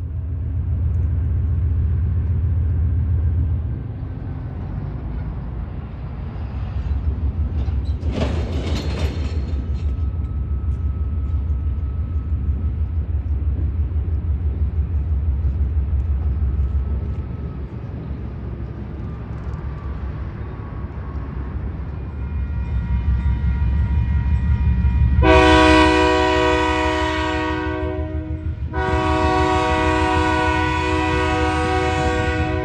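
Diesel locomotive engine running as it pulls a cut of freight cars, with a short hiss about eight seconds in. Its air horn then blows two long blasts, the first from about 25 seconds in and the second starting just before the end, sounding for the grade crossing it is approaching.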